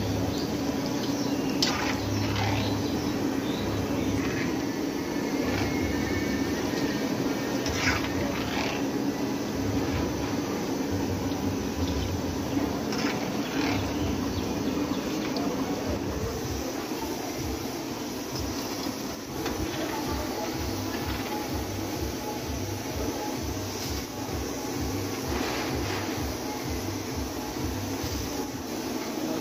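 Hot oil sizzling and bubbling as battered chicken chops deep-fry in a large karahi, over a steady low rumble, with a few short scrapes of a metal skimmer against the pan. A low hum underneath stops about halfway through.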